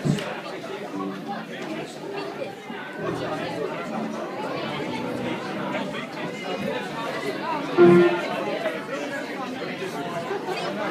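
Indistinct chatter of several people in a hall, with a loud shout of "yeah, yeah" near the end.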